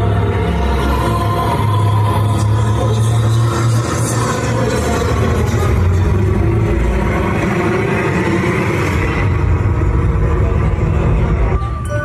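Loud dance music from a live band, with a heavy, steady bass.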